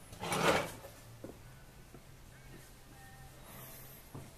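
Brief handling noise on the workbench about half a second in, then a single light click. Otherwise the room is quiet, with a low steady hum.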